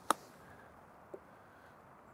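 A single crisp click of a lob wedge striking a golf ball on a short chip shot, about a tenth of a second in. A faint short thud follows about a second later.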